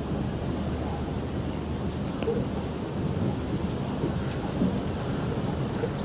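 Steady low rumbling background noise outdoors, with a couple of faint clicks.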